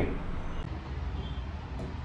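Steady low background rumble and hum, with no distinct events.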